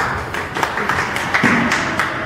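A small audience clapping by hand: a dense, irregular patter of claps.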